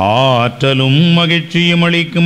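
A man's voice chanting a liturgical prayer, starting with a sliding pitch and then holding long, steady notes.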